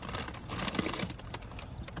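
Irregular light clicks and taps, scattered unevenly, with no steady rhythm.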